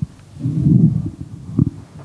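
Low muffled rumble picked up by the lectern microphone, typical of the mic and lectern being handled, with a short knock near the end.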